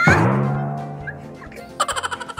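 A deep booming drum-hit sound effect, its pitch dropping sharply at the hit and then ringing out low and fading over about a second and a half. Near the end, loud high-pitched laughter starts.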